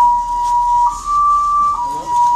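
An electronic two-tone alarm alternating between a lower and a slightly higher steady pitch, each held a little under a second, over and over.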